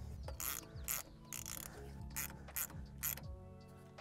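Half-inch ratcheting wrench clicking as it tightens a nut, a series of ratcheting strokes that stop about three seconds in.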